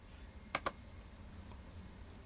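Two quick, faint clicks about half a second in, from someone working at a computer, over a low steady hum.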